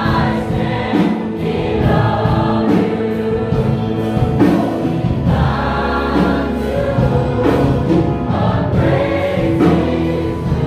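Large mixed choir of men, women and children singing a gospel worship song together, loud and steady.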